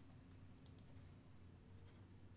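Near silence with two faint computer mouse clicks a little under a second in.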